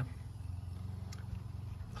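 Steady low background hum, with one faint click about a second in.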